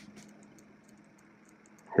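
Quiet room tone with a faint hiss and a couple of soft clicks near the start.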